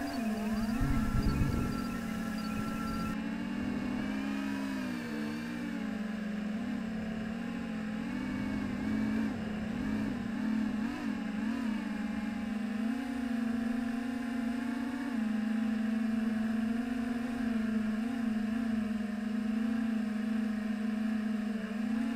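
Racing quadcopter's electric motors and propellers whining steadily, the pitch rising and falling with throttle changes. A few low thumps come in the first two seconds.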